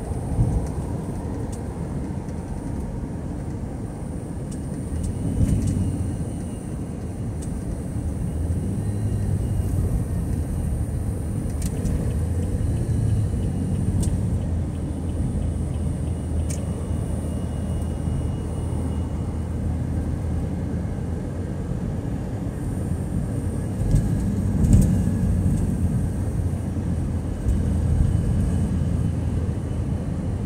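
Car driving at highway speed, heard from inside the cabin: a steady low rumble of road, tyre and engine noise, with a few light clicks now and then.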